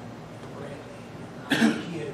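A person coughing once, sharply and briefly, about one and a half seconds in, over a low background.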